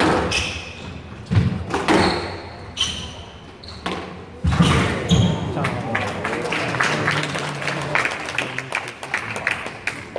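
Squash rally in a hall: the ball cracks off the racket and walls with an echo, and shoes squeak on the court floor. About halfway through the hits stop, and voices and a spatter of clapping follow.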